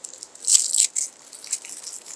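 A small juice carton being handled close up, its packaging crinkling and crackling: a loud cluster of crackles from about half a second to a second in, then lighter scattered crackles.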